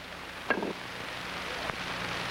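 A cue tip striking the cue ball once, a short knock about half a second in, over the steady hiss of an old film soundtrack.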